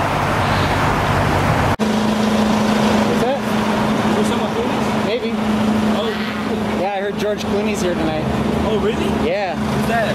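Car engine and traffic noise from a drive-through line, cut off abruptly about two seconds in. Then indistinct voices over a steady low hum.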